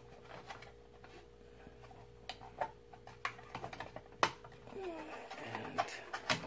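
Hard plastic parts of a BMW E90 console ashtray assembly clicking and tapping as they are pressed and worked to get a piece over its lip: a few sharp separate clicks, the loudest a little past four seconds in, over a faint steady hum. A short hummed "mm" comes near the end.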